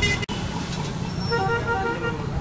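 Street traffic running steadily, with a vehicle horn honking in the second half.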